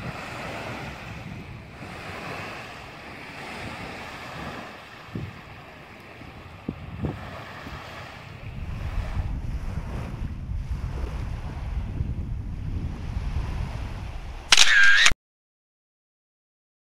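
Small waves washing onto a sandy beach, with wind on the microphone that rumbles more heavily from about halfway through. Near the end comes a loud, half-second camera-shutter sound effect, and the sound then cuts off.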